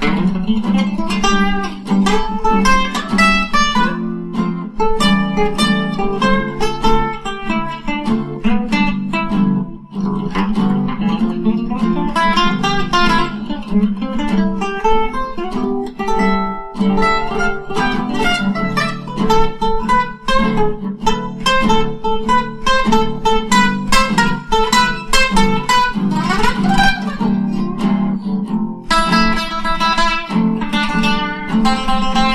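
Acoustic guitar playing an instrumental jazz passage, quick single-note runs over a steady bed of chords.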